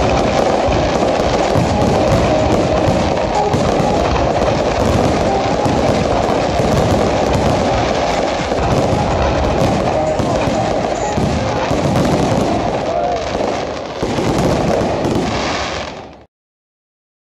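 Fireworks display: a loud, dense and continuous run of crackles and bangs from a barrage of bursting shells.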